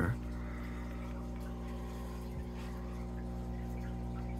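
Steady hum of aquarium equipment with water bubbling, as from an air-driven sponge filter.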